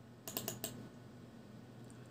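A quick run of four or five faint computer clicks in the first part of the second, then quiet room tone.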